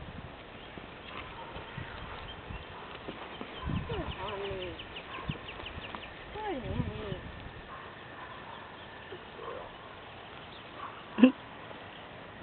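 A young Missouri Fox Trotter filly lying down on grass: low thuds and shuffling, heaviest at about 4 s and 6.5 s, as she folds her legs and drops her body to the ground. A short, sharp sound comes near the end.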